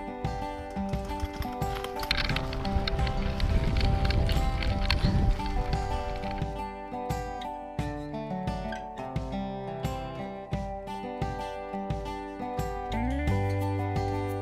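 Background music with held notes and a steady beat, with a louder, noisier stretch about two to six seconds in.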